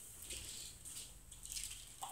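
Faint, soft rustles of thin Bible pages being leafed through by hand, several short swishes in a row while looking for a passage.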